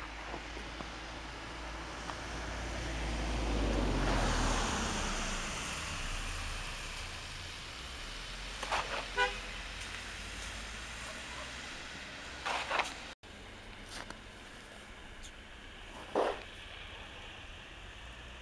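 Road traffic on a snowy street: a car passes, its tyre noise swelling to a peak about four seconds in, and a short car horn toots about nine seconds in, followed by a few more brief sounds later.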